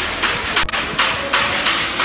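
Hammering on steel frames in a metal fabrication shop: rapid, uneven knocks, about four a second.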